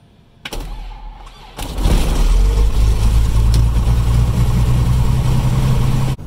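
Piper Comanche's piston aircraft engine being started, heard from inside the cockpit: the starter cranks the propeller for about a second, then the engine catches about a second and a half in and runs steadily and loudly.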